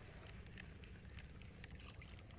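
Faint, irregular clicking and ticking from a spinning rod and reel being handled while a hooked fish is played in, over a low hum.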